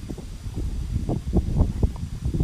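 Low, uneven rumbling with irregular short thuds, typical of wind buffeting a microphone outdoors.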